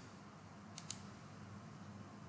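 A computer mouse clicking twice in quick succession about a second in, over a faint steady hum.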